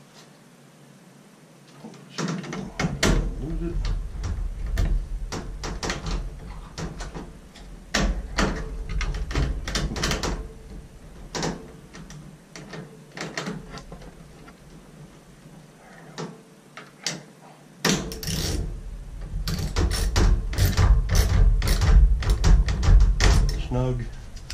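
Hand tools and screws clicking and knocking against the sheet metal of a dryer's control panel, with bumping and rubbing from handling, as the control board's screw is driven back in. The noise comes in two busy stretches with a quieter pause between, and ends in a quick run of ratchet clicks from a socket wrench.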